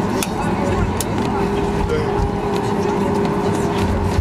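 Cabin noise of a Boeing 737-8200 taxiing after landing: a steady engine hum and low rumble, with a steady tone that comes in about a second in. Passengers talk over it.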